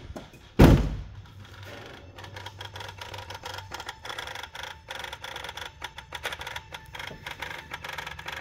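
A loud thump about half a second in, the car door shutting, then the cold Mazda Miata idling with rapid, irregular ticking from its throttle body, the abnormal throttle body noise under investigation.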